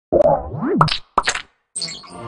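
Network logo sting made of cartoon sound effects: quick pops and a springy boing that rises and then falls in pitch, followed by two more short pops separated by brief silences.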